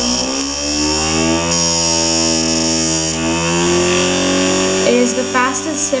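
Simple reed-switch electric motor with a neodymium-magnet rotor, running on 6 V from four AA batteries: a loud buzzing whine that rises in pitch over the first second or so as the motor spins up to high speed, then holds steady. A voice comes in near the end.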